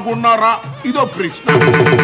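A man speaks, then about one and a half seconds in an electronic ringtone starts suddenly with a loud, fast-warbling trill.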